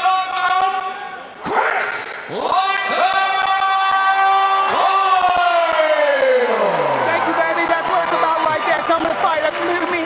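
A ring announcer's voice drawing out a long shouted word, held for about three seconds and then sliding down in pitch, as a fight winner is announced, with crowd cheering.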